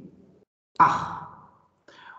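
A person's sigh: one breathy exhale about a second in that fades away over under a second.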